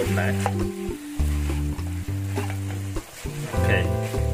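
Pork cartilage sizzling as it is stir-fried in a pan, with a spatula scraping and clicking through the food, over background music with long held bass notes.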